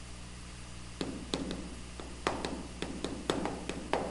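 Chalk tapping and scratching on a chalkboard as figures are written: a quick series of about a dozen sharp taps beginning about a second in.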